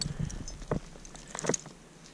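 Gloved hand scrabbling in dry, loose dump soil to pick out a marble, with a few small scattered clicks of dirt and debris, dying down near the end.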